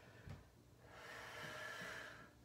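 A woman's long audible breath out during the exercise's effort, lasting about a second and a half. There is a soft low thump shortly before it.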